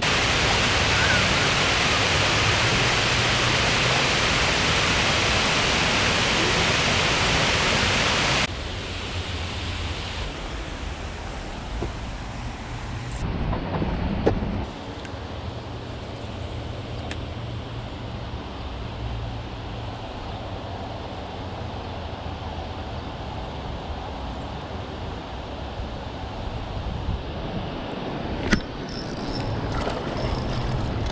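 Steady rushing of water pouring over a concrete weir, which cuts off abruptly about eight seconds in, leaving a much quieter steady hiss with a few faint knocks.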